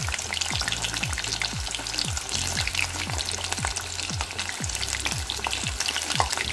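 Salmon fish head pieces deep-frying in hot oil in a pot, a steady crackling sizzle as they are turned with chopsticks, the oil hot enough to crisp the outsides golden brown. A low thumping beat, about two a second, runs underneath.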